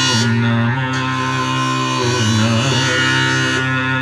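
Tanpura plucked in its repeating cycle of open strings, a steady sustained drone.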